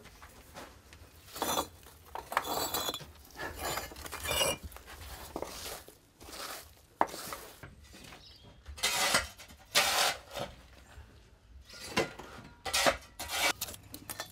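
Kiln bricks clinking and knocking against one another as they are taken down and stacked during the unpacking of a wood-fired kiln: a run of irregular sharp knocks and clinks.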